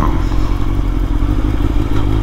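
Honda CBR1000RR's inline-four engine running steadily while riding in traffic, with wind noise over the microphone.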